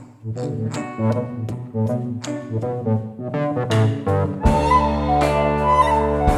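A live band of recorders, electric guitar and drums plays an art-rock song. Sharp, regular percussive hits carry the pitched notes, and about four and a half seconds in a deep sustained bass enters and the sound fills out.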